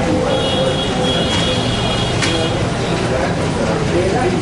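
Indistinct voices of several people talking over a steady low hum, with a thin high-pitched tone for about two seconds near the start.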